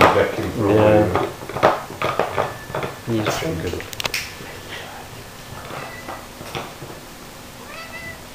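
A pet animal crying in wavering, pitched calls, loudest in the first second, with another cry about three seconds in and quieter after that.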